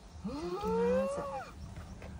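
Several voices saying the Japanese mealtime phrase 'itadakimasu' together in a drawn-out chorus, lasting about a second.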